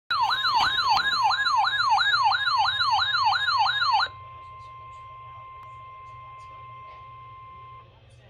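RadioShack NOAA weather radio alerting to the weekly test. Its alarm sounds a loud, fast warbling siren, about two and a half sweeps a second, over the steady 1050 Hz NOAA warning tone. About four seconds in the siren stops, and the steady tone carries on more quietly until just before the end.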